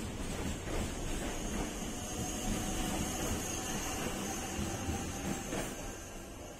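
Passenger train at the station platform running steadily: a continuous rumble with a faint high whine.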